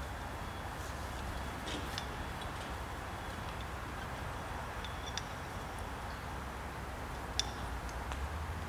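Quiet room tone with a steady low hum, and a few faint clicks and rustles as accessory cord is wrapped around a rope to tie a prusik hitch; the sharpest click comes near the end.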